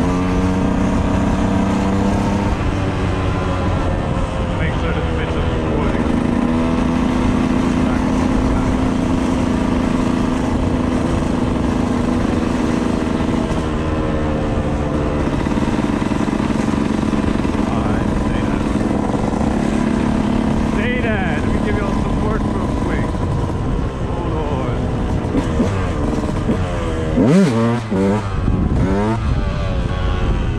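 Dirt bike engine running while riding along a street, its pitch stepping up and down with throttle and speed. Near the end, a few seconds before the close, the engine revs sharply up and down several times.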